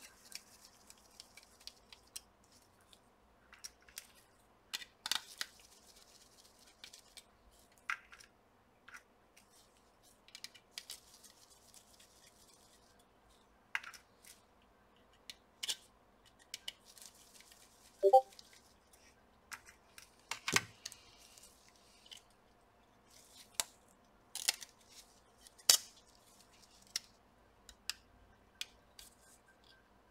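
Scattered small clicks, taps and scrapes of a screwdriver and gloved hands working at a laptop's copper heatsink-and-fan assembly. There is a brief squeak a little past halfway and a sharper knock, the loudest sound, a couple of seconds after it.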